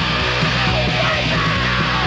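Loud rock music: a full band with drums, bass and guitar, and a yelled vocal sliding over it.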